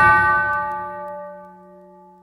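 The beat cuts out and a single bell-like note rings on alone, fading away steadily as the track's final tone.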